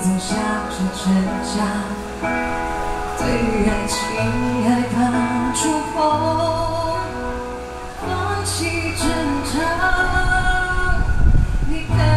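A woman singing a slow, warm song live into a handheld microphone over instrumental accompaniment, with held bass notes beneath her voice.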